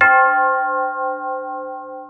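A Japanese wind bell (fūrin) struck once by its clapper, ringing with several clear tones that slowly fade, with a slight wavering in level.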